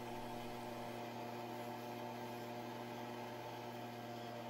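Combined bench grinder and belt sander running with a steady electric-motor hum. It had to be spun by hand to start, which the owner thinks might be a failed starter.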